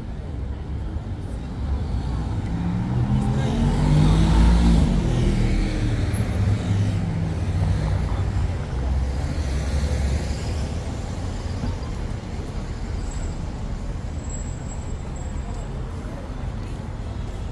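Motor vehicles passing close by on a city street: one engine swells to its loudest about four to five seconds in and fades as it goes by, and a second passes around ten seconds in, over steady traffic noise.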